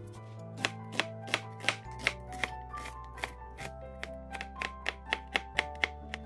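Chef's knife chopping onion and garlic on a plastic cutting board: a steady run of quick knife strokes, about three a second. Soft background music plays underneath.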